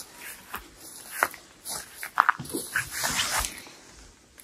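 Rustling and crinkling as the wrapped root ball of a fruit tree sapling is handled, with a patch of louder rustle near the end and a few short animal calls about a second and two seconds in.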